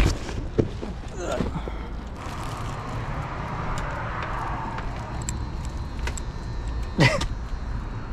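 Footsteps and handling knocks outside, with a single loud clunk near the end as the restaurant's locked glass front door is pulled and does not open.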